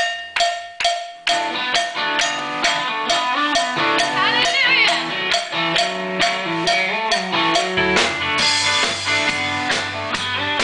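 A live gospel band starts a song: a few sharp ticks keep time, then drum kit, electric guitar and keyboard come in together about a second and a half in and play on at a steady beat. A fuller bass line joins near the end.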